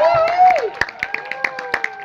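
Small audience clapping in a cinema auditorium: separate claps come through clearly rather than as a dense roar. In the first half, voices call out with rising and falling pitch over the clapping.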